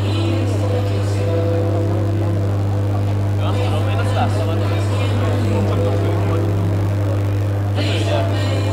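Indistinct chatter of people around a ring, over a loud steady low hum and faint background music.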